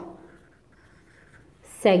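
A felt-tip marker writing on paper, its tip faintly rubbing across the page as letters are written. A voice starts near the end.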